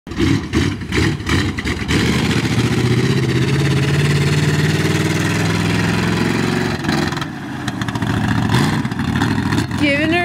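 Ford 390 big-block V8 of a lifted mud truck, first revving in quick, uneven bursts, then pulling under load with its note climbing slowly as the truck drives off; the note breaks briefly about seven seconds in, then picks up again.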